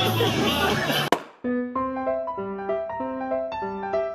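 Crowd chatter that cuts off suddenly about a second in, followed by solo piano music playing a simple melody of single notes.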